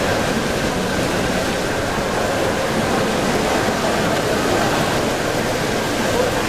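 Steady rush of splashing water from a sculpture fountain, an even hiss with no breaks.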